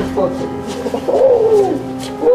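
A voice making drawn-out, wavering moans or hoots over a steady low hum, with one long call about a second in that rises and then slides down.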